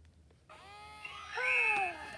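Baby Alive Grows Up talking doll's built-in electronic baby voice: a drawn-out toddler-like vocalization starting about half a second in, its pitch arching and then sliding down toward the end.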